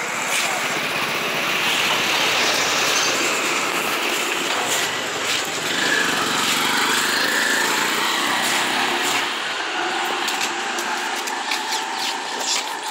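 Street traffic with the small engine of a three-wheeled auto-rickshaw passing close by. The sound builds about a second in, stays loud through the middle and eases off near the end.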